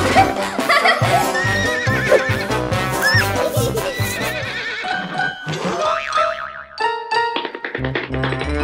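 Upbeat children's background music with a steady beat, with a cartoon horse-whinny sound effect laid over it.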